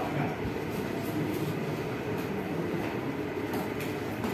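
Steady low rumbling background noise with no clear voice.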